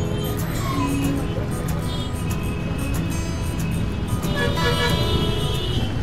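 Busy street noise of traffic, several short car horn toots and indistinct voices, mixed under music.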